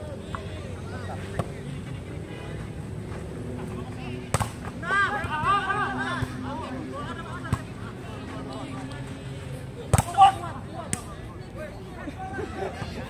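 Volleyball slapped by players' hands and arms during a rally: a sharp smack about four seconds in, fainter ones before and after, and two quick smacks close together about ten seconds in. Players' excited shouts follow the hits.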